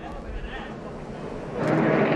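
Race-truck engine drone from the track broadcast, quiet at first under a low background haze, then swelling to a steady, louder drone about a second and a half in.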